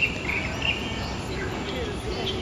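Common moorhen chick giving short, high begging chirps, a few in the first second, while an adult feeds it, over a steady background hiss.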